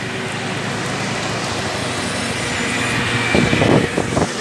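Road and wind noise of a moving vehicle heard from on board, a steady rush that grows louder near the end.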